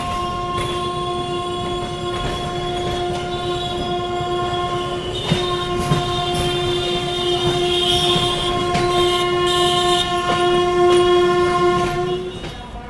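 Train horn sounding one long, unbroken, steady note, a little louder near the end, over the rumble and occasional clicks of wheels on the rails.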